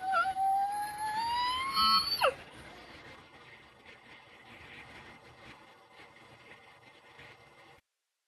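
A single drawn-out high cry that rises slowly in pitch for about two seconds and then cuts off sharply, followed by faint low hiss.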